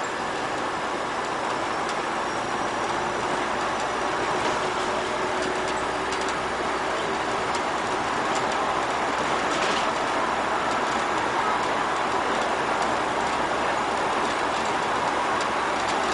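Bus driving at speed on an open road, heard from the driver's cab: a steady running noise of engine and tyres that grows a little louder in the first few seconds as the bus picks up speed.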